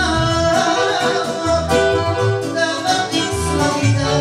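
A woman singing live through a microphone, accompanied by an electronic keyboard and accordion, with a pulsing bass beat.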